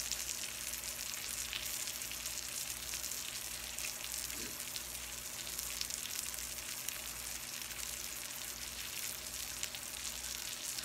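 An egg just cracked into butter on a hot griddle, frying beside salmon: a steady sizzle with fine crackling.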